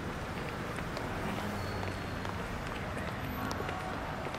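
Busy city street ambience: a steady wash of noise with scattered footsteps and indistinct voices of passers-by.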